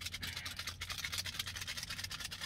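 A small paper packet of Splenda sweetener being shaken or flicked, its granules and paper rustling in a fast, even rattle.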